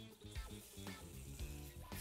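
Quiet background music over a faint, steady sizzle of food frying on a hot grill pan.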